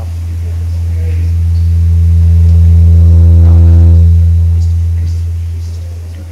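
Loud electrical hum through a lecture-hall sound system, a deep steady buzz with a ladder of overtones that swells up over about three seconds and then fades away.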